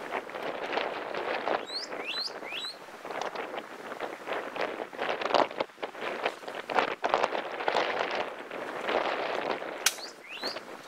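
Footsteps and rustling as people walk through dry brush, uneven and continuing throughout. A few short rising bird chirps come about two seconds in, and there is a single sharp click near the end.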